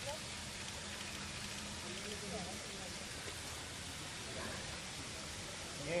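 Steady hiss of water, like rain or a stream, with faint voices now and then.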